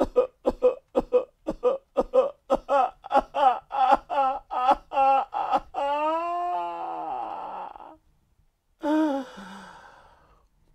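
A man sobbing in short, rhythmic gasps, about three or four a second, that grow louder and rise in pitch. About six seconds in they break into one long wail that falls in pitch. After a brief pause a second, shorter wailing cry comes near the end: deep crying in despair.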